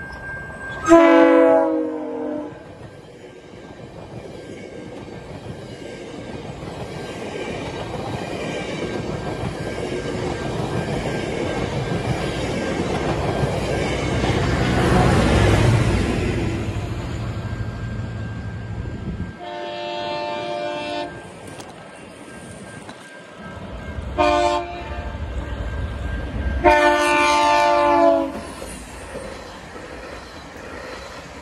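GO Transit commuter train led by MP54 locomotive 662 passing at speed, with bilevel coaches behind. Its horn sounds a long blast about a second in. The rumble of engine and wheels then builds to its loudest around the middle as the locomotive goes by, and the coaches' wheels run on over the rails. In the second half the horn sounds a long blast, a short one and a final long one.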